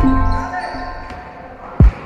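Background music fading out, then one loud basketball bounce on the gym's wooden floor near the end.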